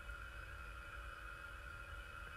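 Faint steady background hum and hiss of the recording room: room tone between spoken phrases.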